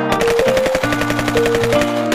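Machine-gun fire sound effect: one rapid, evenly spaced burst of shots that stops just before the end, laid over background music with held notes.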